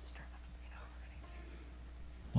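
Quiet room tone with a steady low hum and a faint, whispery voice.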